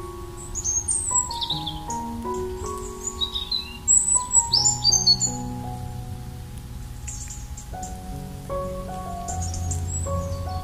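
Soft piano music with birdsong mixed over it: slow held notes throughout, with a run of quick high chirps through the first half, loudest about four to five seconds in.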